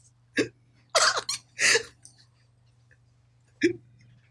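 A man laughing helplessly in short, breathless bursts with pauses between them. The loudest bursts cluster around one to two seconds in, and there is one more near the end.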